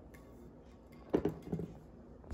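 A lidded tumbler being set down on a tabletop: a couple of quick knocks about a second in, then a smaller knock as it settles.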